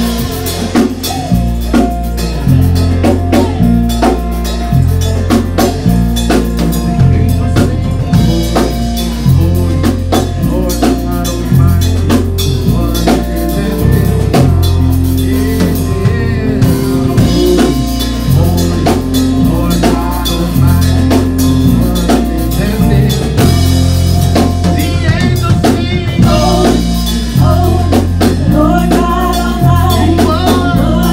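Gospel praise-and-worship music with a steady drum-kit beat and a stepping bass line, and singers coming in at times.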